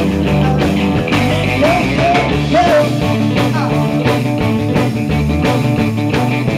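Live rock'n'roll and rhythm & blues band playing: a woman singing lead over electric guitar, bass and a steady drum beat.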